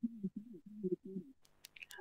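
A faint, short tune of low notes stepping up and down in pitch, lasting about a second and a half.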